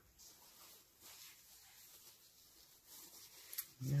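Faint, soft rubbing, with a small click shortly before the end.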